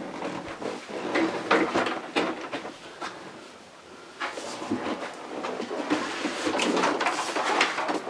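Irregular knocks, clicks and scrapes of a person climbing into a large wearable robot-suit frame from behind and stepping snowboard boots into the bindings in its feet. The sounds ease off for a moment around the middle, then pick up again.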